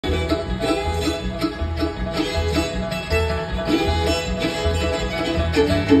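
Live bluegrass band playing: banjo, fiddle, guitar and mandolin over a steady low bass beat, heard through the PA from the audience.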